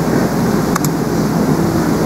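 Steady, loud low rumbling noise with a faint click or two about a second in.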